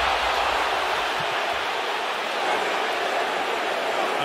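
Large arena crowd's steady, dense noise, thousands of voices blended with no single voice standing out.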